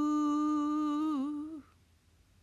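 A lone unaccompanied voice humming the closing held note of the song. The note wavers and dips in pitch about a second in, then fades out a little past halfway.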